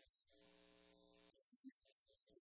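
Near silence: faint room tone, with one very faint held pitched tone for about a second near the start.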